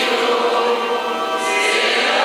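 A church choir singing with sustained held notes. This is the Gospel acclamation sung at a Lenten Mass before the Gospel is read.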